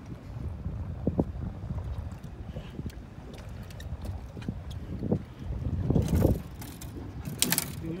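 Wind rumbling on the microphone and water slapping against a small boat's hull, with scattered clicks and a few sharper knocks near the end, typical of handling a rod and reel on the boat.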